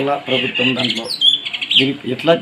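A bird chirping: a few short, high calls falling in pitch a little after a second in, between stretches of speech.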